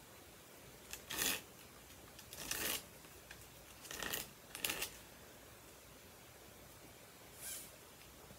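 Cut end of a heavy-duty plastic zip tie scraped across a sheet of 50-grit sandpaper in about five short, separate strokes, knocking the sharp points off the end.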